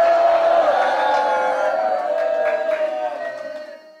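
A long held vocal cry that slowly fades away near the end.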